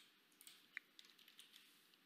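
Faint computer keyboard typing: a few scattered key clicks.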